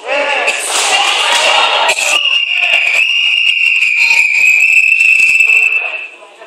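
Spectators shouting during a full-contact karate bout, then about two seconds in a long, steady, high-pitched signal tone sounds for about four seconds and cuts off suddenly: the timekeeper's signal ending the round.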